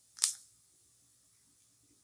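Cumin seeds frying in hot mustard oil in an iron kadhai: one sharp pop about a quarter of a second in, then a faint steady sizzle.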